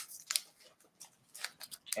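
A few faint, short crinkles and ticks of a clear plastic snack wrapper around a rice cracker being handled.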